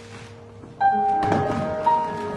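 Piano tune played on a Roland electronic keyboard through PA speakers: a held chord fades, then a loud new chord is struck less than a second in, with another note added near the end.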